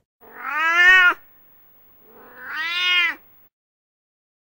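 A cat meowing twice: two drawn-out meows of about a second each, the second starting about two seconds after the first.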